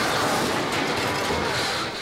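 Steel lift bridge grinding and crashing into a freighter's smokestack, a loud, steady, noisy rush of scraping metal with no separate strikes.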